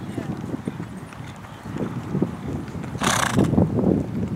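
A dressage horse trotting on a dirt arena, its hoofbeats thudding in a steady rhythm, with a short loud snort about three seconds in.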